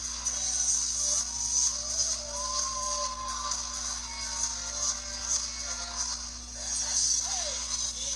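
Live pop music from a concert stage, picked up from the audience on a handheld phone, with a held high note about two seconds in.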